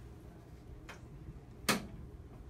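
Quiet room tone broken by a faint click about a second in and a louder, sharper click near the end.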